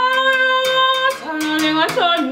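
A woman singing a long held note that shifts pitch about halfway through, to her own accompaniment on a Xhosa uhadi, a musical bow with a calabash gourd resonator: its string is struck with a stick about twice a second, giving a low steady drone under the voice.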